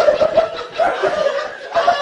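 A person laughing in short, closely repeated pulses.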